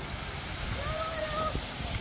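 Steady outdoor hiss with a low rumble. A faint, distant voice calls out once for about a second in the middle.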